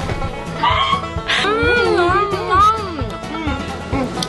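A woman making long, swooping 'mmm' moans of tasting, her voice sliding up and down for a couple of seconds, over background music.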